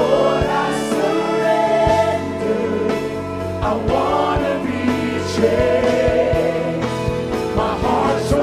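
Live Christian worship song: a group of singers on microphones singing together as a choir, over a band with guitars and regular beat hits.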